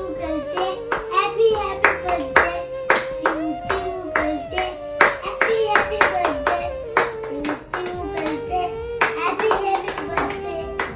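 Hands clapping in a steady rhythm, about two claps a second, along with a high voice singing a wavering tune, as at a birthday song.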